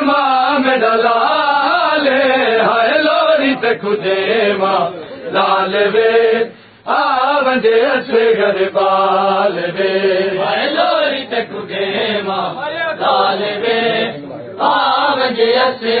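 A group of men's voices chanting a Saraiki noha, a mourning lament, in sung lines broken by short breaths. The sharpest break comes about six and a half seconds in.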